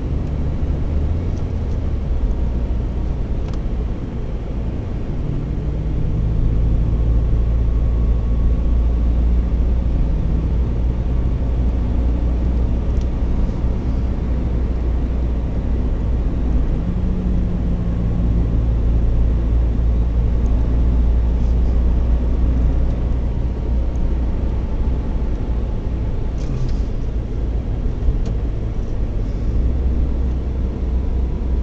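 Car driving, heard from inside the cabin: a steady low drone of engine and tyre noise. The engine note shifts in pitch a few times, and the sound gets a little louder about six seconds in.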